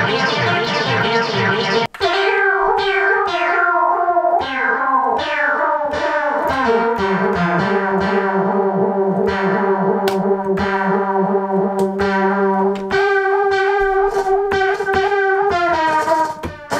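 Synthesizer sequence run through a 1982 Powertran DIY digital delay line, its notes smeared into rapid repeating echoes. The sound drops out briefly about two seconds in, and a low note holds steady for several seconds in the middle as the delay controls are turned.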